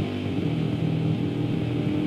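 Hardcore punk recording: distorted electric guitar and bass playing a steady, dense riff.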